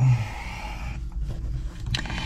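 Rustling and scraping of handling noise as the camera and light are moved about and repositioned.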